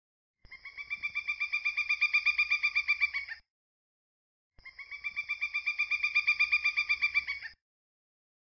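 A bird call: a rapid pulsed trill of about ten notes a second that grows louder, given twice, each run about three seconds long with a second of silence between them.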